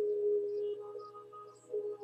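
A single held low note of soft ambient background music, starting at once and slowly fading, with faint higher notes over it and a low steady hum beneath.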